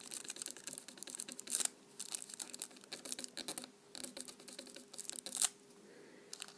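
A cotton pad rubbing a sheet of nail transfer foil onto a nail, the thin foil crinkling and scratching in quick repeated strokes. The rubbing stops about half a second before the end.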